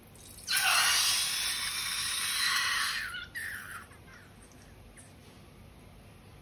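Slime and air spurting out of the opening of a squeezed balloon with a loud, even hiss for about three seconds, a short break, then a weaker spurt.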